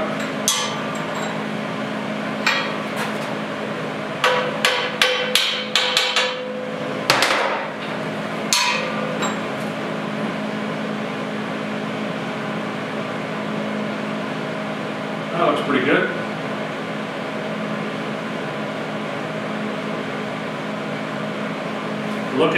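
Hammer taps on a clamped steel checker-plate step and receiver-hitch bar as it is knocked into line: a few single sharp metal knocks, a quick run of about seven, then two more, over a steady background hum.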